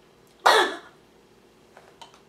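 A woman's single harsh cough about half a second in, sudden and dying away within half a second, acted as a choking fit.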